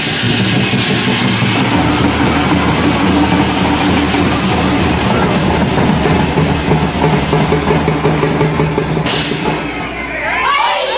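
Folk drum ensemble playing: many large double-headed drums beaten with sticks in a fast, dense rhythm, over steady low pitched tones. The sound thins out near the end.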